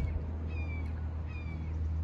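A bird calling twice, two faint, short falling calls, over a steady low hum.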